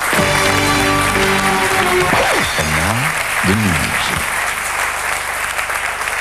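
Studio audience applauding over a short music jingle; the jingle ends with a few falling pitch slides about four seconds in, and the applause carries on after the music stops.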